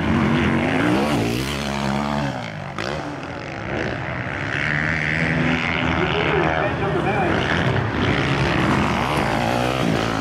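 450cc four-stroke motocross bikes racing on the track, their engines revving up and down in pitch again and again as the riders shift and work the throttle over the jumps.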